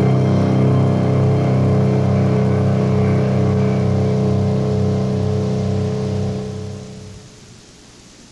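A loud, steady low drone of sustained tones, with fainter higher tones above it, fading out about seven seconds in.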